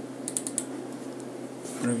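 About four quick, sharp clicks at the computer, a quarter to half a second in, over a low steady hum.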